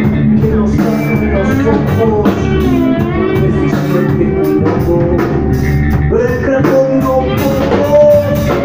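Live rock band playing loud: electric guitars and drum kit, with a voice singing.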